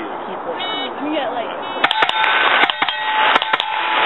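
A rapid string of rifle shots from an AR-style semi-automatic rifle, starting about two seconds in and coming in three quick groups of two or three. Steel targets ring after the hits.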